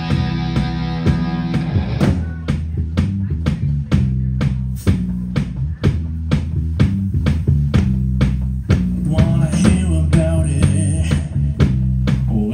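Live rock band playing electric guitar, bass guitar and a drum kit. A held, ringing chord fills the first two seconds, then the drums come in with steady beats about three a second under the guitars, and a singer's voice joins near the end.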